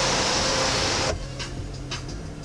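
Rain on the panoramic glass roof of a Hyundai Santa Fe, heard from inside the cabin, with the steady whine of the roof's power sunshade motor running. Both cut off sharply about a second in, leaving a quieter cabin with a few faint ticks.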